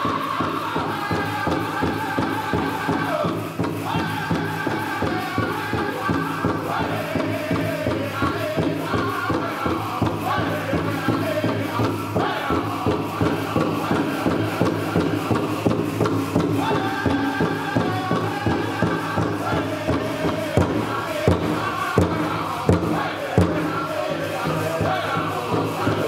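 Powwow drum group singing a jingle dress song in chorus over a steady, even drumbeat, with several louder drum strokes near the end.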